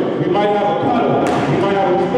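A person's voice going on steadily.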